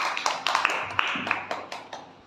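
Several children clapping their hands, uneven and out of step, dying away toward the end.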